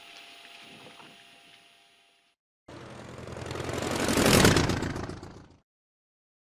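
Steady cockpit noise of a Gulfstream G-IV rolling out after landing fades away within about two seconds. After a brief silence, a loud rushing noise starts, swells over about two seconds to a peak, then falls and cuts off abruptly.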